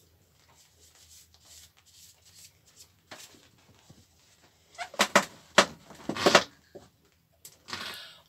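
Handling noises from wiping down a sailboat's inboard engine bay with a cloth. Faint shuffling at first, then a quick run of loud rustles and knocks about five seconds in.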